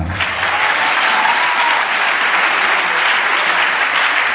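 A church congregation applauding in acclamation of the Lord: dense, steady clapping from many hands.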